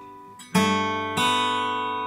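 Yamaha steel-string acoustic guitar played by hand: a chord fades out, then two new chords are struck, about half a second and just over a second in, and left ringing.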